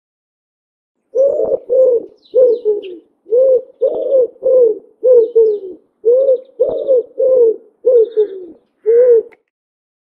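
A dove cooing: a long run of short, low coos, about two a second, starting about a second in and stopping shortly before the end.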